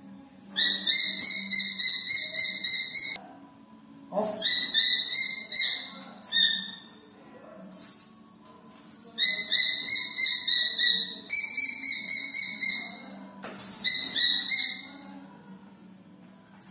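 A bird of prey calling in shrill, rapid series of high notes, each note dropping slightly in pitch, in about six bouts of one to two and a half seconds with short pauses between.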